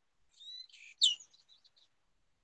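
A bird chirping: a short run of high-pitched notes, the loudest a quick falling note about a second in.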